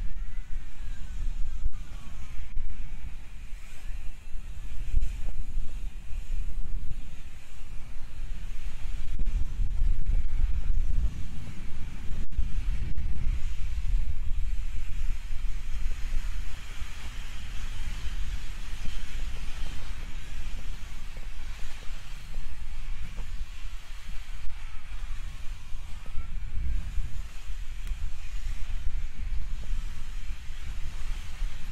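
Wind buffeting the microphone as it moves at skating speed, with a steady rolling hiss from inline skate wheels on the concrete track. The hiss swells in the middle stretch.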